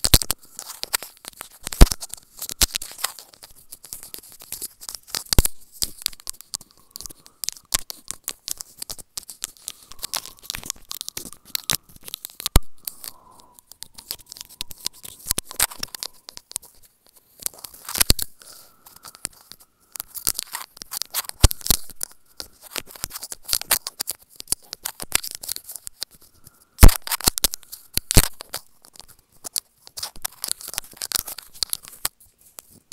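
Teeth nibbling and biting on a wired earbud microphone and its cord held right at the mouth. It comes through as close, irregular crackling clicks and crunches, with a few sharper, louder bites.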